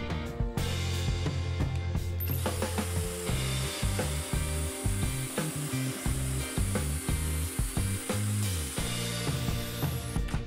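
Cordless drill boring pocket holes into a pine beam through a pocket-hole jig, running steadily from about two seconds in until just before the end. Background music with a bass line and steady beat plays underneath.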